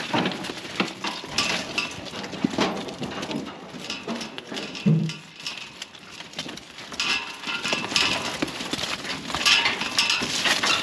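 Sheep moving through a steel-panelled yard: a scatter of hoof clatter and knocks, with metal clinks and rattles from the panels and gates. There is a brief low sound about halfway through.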